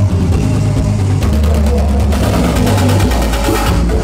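Live pagode baiano band music with a heavy bass line and dense, fast percussion that thickens about a second in.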